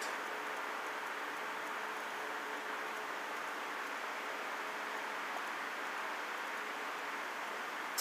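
Steady, even background hiss with a faint, constant low hum; no distinct sound stands out.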